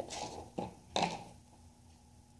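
A few soft taps and scrapes of hands handling things on a table in the first second, then quiet over a faint steady hum.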